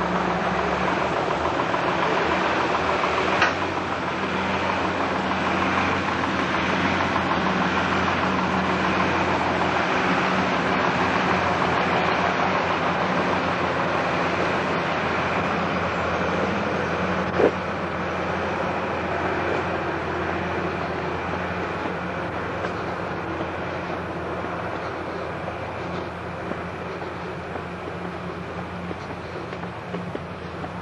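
Train in motion: a steady running noise with a low hum under it, two sharp knocks about three and seventeen seconds in, easing off a little over the last ten seconds.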